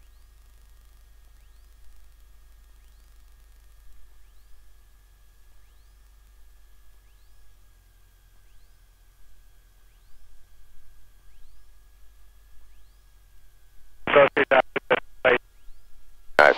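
Quiet aircraft intercom audio: a low steady hum with faint high tones and chirps, then a short choppy burst of radio or intercom chatter about two seconds before the end.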